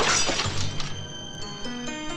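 A loud crash with glass shattering, dying away within about the first second as a door is smashed in. Music follows, with a run of notes climbing step by step.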